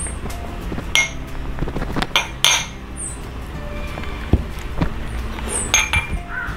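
Glass cups knocking and clinking against a stainless steel mixing bowl as wheat flour is tipped in: several separate sharp clinks.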